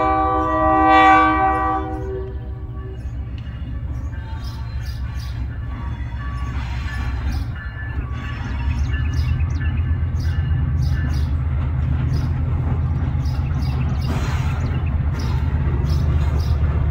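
Diesel freight locomotive's horn, a single blast that ends about two seconds in, followed by the low rumble of its diesel engine growing louder as it approaches, with light clicking over it.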